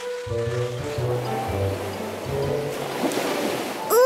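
Cartoon background music with a steady bass line, over a rushing ocean-surf sound effect that swells about three seconds in.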